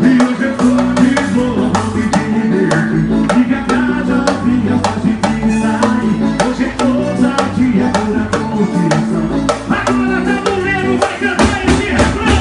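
Live forró band music played loud through the stage sound system, with a steady drum beat under sustained bass and melody lines.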